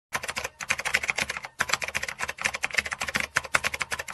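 Typing sound effect: rapid, irregular key clicks, with short pauses about half a second and a second and a half in.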